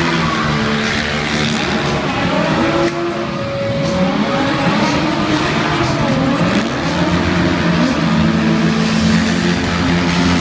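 Stunt motorcycle and car engines revving hard, their pitch rising and falling as the throttles open and close, with tyres squealing as the vehicles slide and spin.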